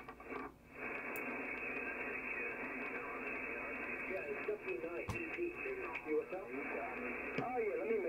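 Single-sideband shortwave receiver audio on the 20-metre band, from an SDRplay RSP1 running HDSDR: steady band-noise hiss held inside a narrow receiver passband of about 2.7 kHz, with faint, garbled sideband voices coming through, most in the middle and near the end.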